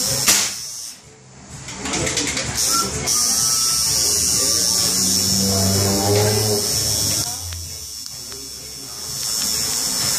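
Electric tattoo machine buzzing steadily as the needle works on skin, cutting out briefly about a second in.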